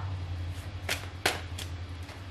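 Tarot cards handled at the deck: four short, crisp card flicks, the loudest just past a second in, over a low steady hum.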